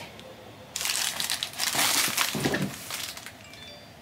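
Plastic bubble wrap being crumpled and pressed flat by hand: an irregular crinkling and rustling that starts just under a second in and fades out by about three seconds.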